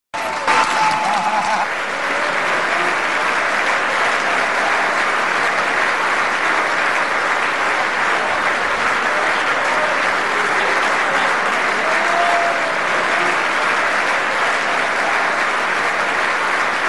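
Steady applause from a large room full of people clapping, with a few faint voices rising through it.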